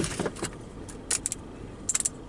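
Small clicking rattles inside a car as the driver moves about in her seat, in three short spells, over a low steady rumble.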